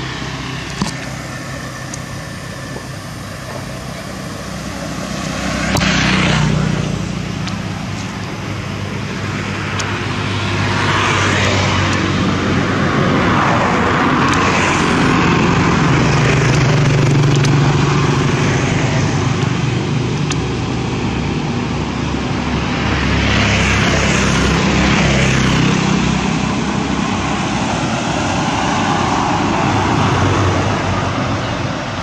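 Road traffic: motor vehicles passing one after another over a steady engine hum. Each swells and fades, about five in all, the first a quick rise and fall about six seconds in.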